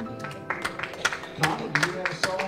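Scattered hand clapping from a small congregation, a dozen or so irregular claps, as the last held notes of the hymn accompaniment die away.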